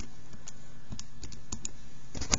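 Buttons of a TI-83 Plus graphing calculator being pressed: a quick, uneven run of small plastic key clicks as a multiplication is keyed in.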